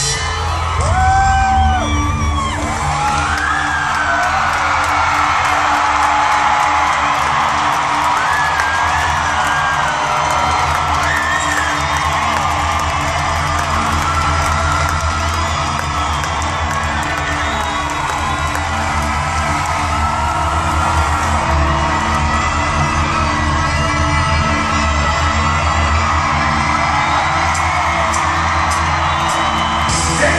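Live band music with a steady low bass drone under a large arena crowd cheering and whooping, with many high shrieking voices riding over it.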